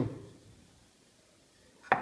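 A single short, sharp knock near the end as the turned wooden bat is handled over the workbench, against an otherwise quiet small room.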